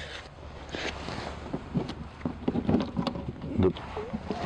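Small clicks, knocks and scuffs of hands working the latch of an RV's exterior compartment door, over a steady low hum.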